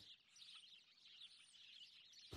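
Near silence with faint bird chirps in the background.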